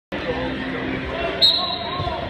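A referee's whistle, one short, high, steady blast about a second and a half in, signalling the start of a wrestling bout, over the voices and hubbub of a gym.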